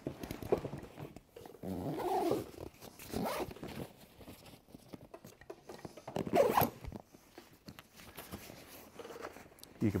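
Nylon backpack zipper being pulled closed along a compartment in several separate strokes, the loudest about six and a half seconds in.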